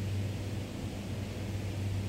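Steady low machine hum with an even hiss from an indoor revolving ski deck, the endless carpet slope running under the skier.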